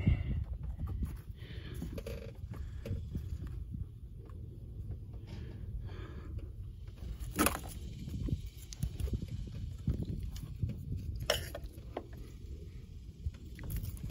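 Low rumbling handling noise from a hand-held phone moved around over an engine bay, broken by two sharp clicks, one about seven seconds in and another about eleven seconds in.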